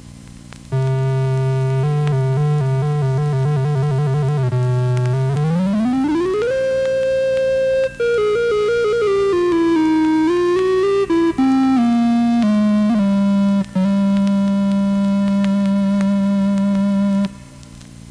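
Stylophone 350S synthesizer on its clarinet (woodwind) voice, playing one note at a time: a quick trill between two low notes, a smooth slide up to a held high note, a wavering stepped run back down, and a long held note that stops sharply near the end.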